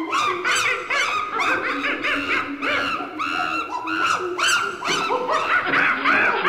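Monkey chattering and screeching: quick calls that rise and fall in pitch, several a second, growing busier towards the end.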